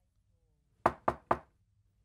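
Three quick knocks on a wooden door, about a second in.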